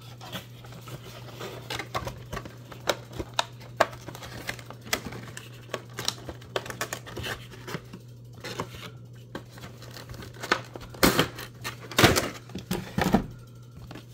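Funko Pop box being opened and its clear plastic insert pulled out and handled: irregular crinkling and crackling of thin plastic with cardboard rustling, loudest in a cluster about eleven to thirteen seconds in, over a steady low hum.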